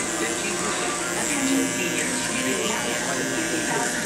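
Electric hair clippers buzzing steadily while cutting close around the sideburn and temple.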